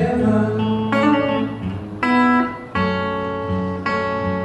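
Acoustic guitar playing a slow instrumental passage, sustained chords struck about once a second.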